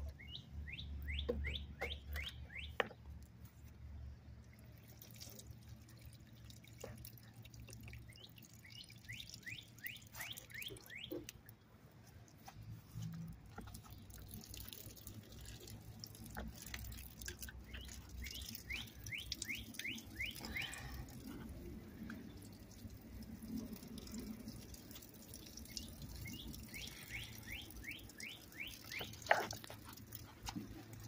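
A small bird singing outdoors: short runs of quick, sweeping chirps, each run lasting a second or two and coming again every several seconds, over a steady low hum.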